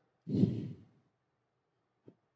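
A man sighs once, a short heavy breath out with a little voice in it, lasting about half a second, starting a quarter second in.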